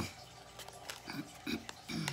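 A woman's short, low throat noises, grunt-like, building into a throat-clearing near the end, with a sharp tap at the start.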